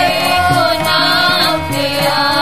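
Sikh Gurbani kirtan: voices singing a long wavering line over a harmonium's held chords and a steady drum beat.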